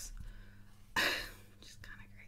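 A woman's soft, breathy laugh: one short exhaled puff of air about a second in, without voiced tone, then quiet breathing.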